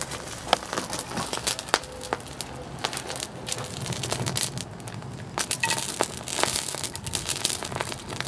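Burning magnesium powder packed around a phone on a block of dry ice, crackling and popping with irregular sharp snaps.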